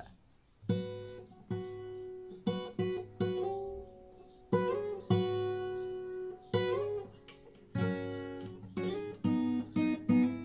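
Capoed steel-string acoustic guitar playing a two-note shape on the low E and A strings, struck again and again and slid up from the 3rd to the 5th fret and back, with quicker strums near the end.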